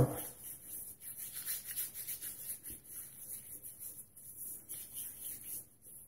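Wet hands rubbing soapy bloom water from a shaving soap into beard stubble as a pre-shave: a soft, irregular rubbing.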